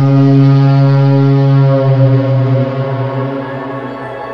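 Background music: one loud, low held note with many overtones that eases off near the end as the track goes on.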